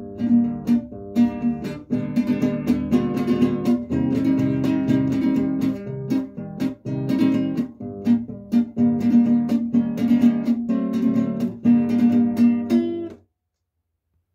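Classical guitar played in a steady rhythm: thumbed bass notes alternate with quick downward strums of the index finger. About a second before the end, a hand flat on the strings damps them and the sound stops abruptly.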